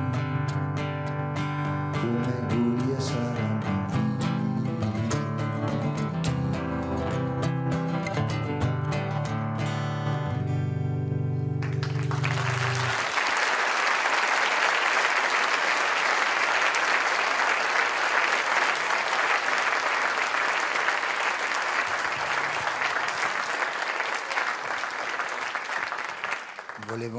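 Acoustic guitar playing the closing bars of a song, plucked and strummed over low bass notes, and stopping about halfway through. Steady audience applause follows and lasts to the end.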